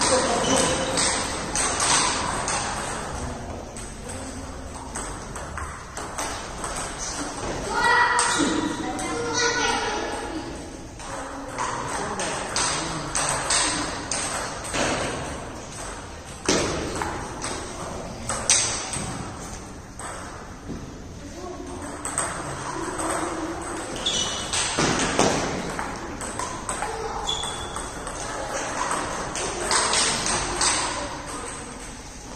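Table tennis rallies: a celluloid ball clicking off rubber paddles and bouncing on the table top in quick back-and-forth sequences, with short breaks between points.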